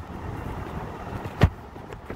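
A low, steady background rumble, with one sharp click about a second and a half in.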